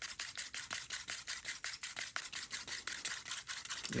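A stirrer scraping quickly round a plastic cup of thick acrylic pouring paint mixed with Floetrol, about nine strokes a second.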